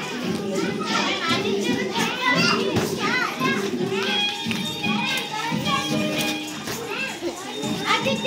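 A crowd of young children chattering and calling out together as they play, with music playing underneath that comes through more clearly from about halfway.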